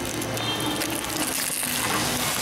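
A CP-4 screw press running, with water pressed out of the polymer streaming and splashing through its perforated screen into the trough below. The noise is steady, with a faint machine hum underneath.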